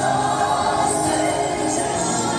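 Music with a choir singing, held notes running steadily.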